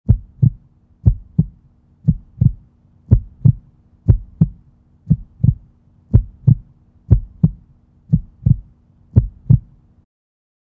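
Heartbeat, pairs of low thumps about once a second, ten beats in all, over a faint steady hum.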